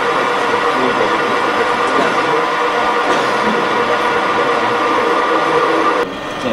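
Metal-turning engine lathe running under power while turning a metal part, a steady mechanical whir with a constant gear whine over the noise of the cut.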